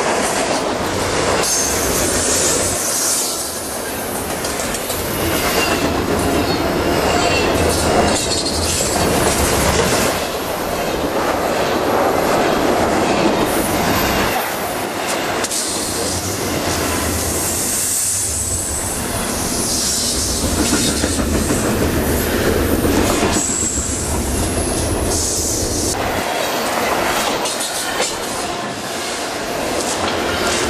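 Double-stack container freight train passing close by: steel wheels clacking over the rails, with high-pitched wheel squeal at a few points.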